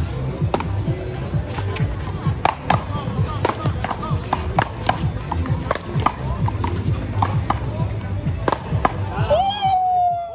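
A paddleball rally: the rubber ball smacking off paddles and the concrete wall in sharp, irregular cracks, over crowd chatter and background music. Near the end a siren starts, its wail falling in pitch.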